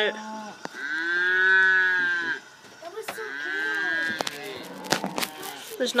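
A cow mooing: one long, loud moo that rises and falls in pitch about a second in, then a fainter second moo a little later. A few short sharp knocks come through as well.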